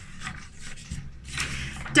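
A sheet of paper being moved and slid across a tabletop: a soft rustling rub that grows louder in the second half.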